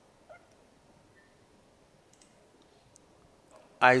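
A few faint, scattered clicks from a computer keyboard and mouse as a file name is typed and a save dialog is worked, over a low background hiss.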